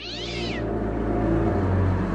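A cat yowling, one drawn-out meow that rises and falls in pitch and ends about half a second in. A low, steady rumbling drone then swells up.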